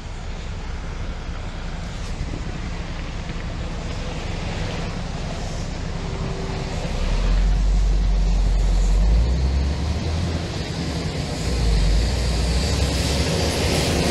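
Diesel locomotive hauling passenger coaches drawing near on the next track: a steady rumbling noise whose deep engine rumble grows louder about halfway through.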